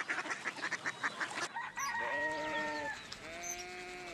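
Farmyard chickens: a run of quick, faint clucks, then a rooster crowing in drawn-out calls from about halfway through.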